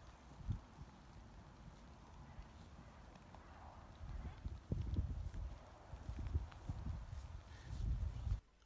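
Faint low thuds and rumble of movement on grass: a person and a rugged horse moving in the paddock, busier in the second half.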